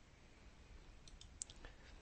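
Near silence with a few faint computer mouse clicks about a second in, one a little louder than the rest.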